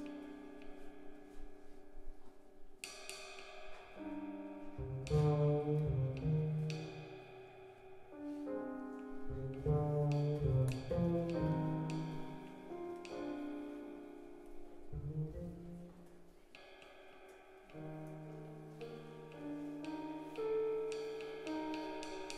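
Live acoustic jazz trio playing: sustained keyboard chords over low double bass notes, with cymbal strikes ringing out every second or two. The music swells and falls back in loudness several times.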